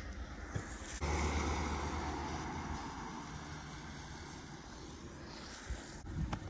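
A camper van's engine and tyres as it moves off: a low rumble with hiss that comes up suddenly about a second in and then fades steadily as it draws away.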